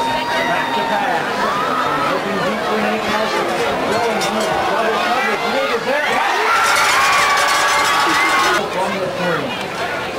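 Crowd of spectators in the stands talking and calling out, many voices overlapping, a little louder for a couple of seconds past the middle.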